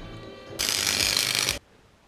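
A ratchet wrench worked fast under the bonnet: a dense run of rapid clicking lasting about a second that cuts off abruptly.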